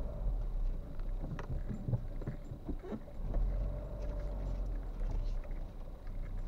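Steady low rumble of a vehicle on the move, with a few faint clicks and knocks.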